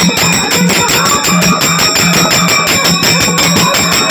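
Dollu folk music: a fast, even beat of low drum strokes with bright metallic jingling running through it.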